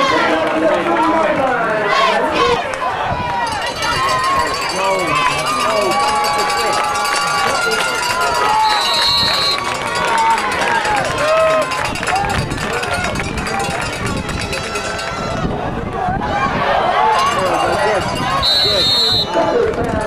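Spectators at a football game: many voices talking and calling out at once, with no single clear talker. A short, high whistle blast sounds about nine seconds in and again near the end, typical of a referee's whistle.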